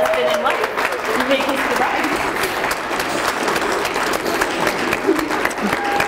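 Wedding guests applauding, many hands clapping at once, with voices calling out over the clapping.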